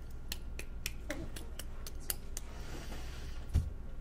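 A quick series of light, sharp clicks, about three or four a second, followed by a soft rustle and a single low thump near the end.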